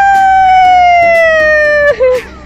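A person's long, loud, high-pitched held vocal cry on one drawn-out note, slowly sinking in pitch and breaking off near the end.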